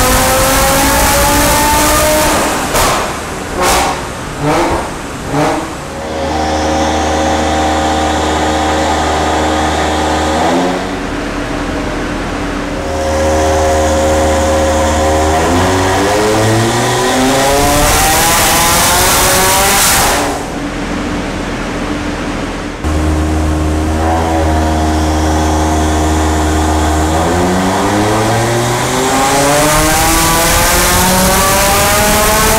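Audi RS3's turbocharged five-cylinder engine, fitted with a big-turbo kit, run on a hub dyno during mapping. The revs climb, then a quick series of sharp bangs follows as the engine comes off load. It is then held at steady speeds and stepped up in revs, rises steeply and cuts off suddenly about two-thirds through, and is held steady again before another climb near the end.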